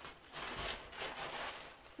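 Plastic courier bag rustling and crinkling as a garment is pulled out of it, in two or three short swells.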